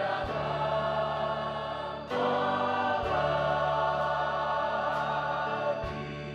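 A choir singing a worship song, accompanied by a band with keyboard, bass guitar, electric guitar and drums. The singing swells louder about two seconds in.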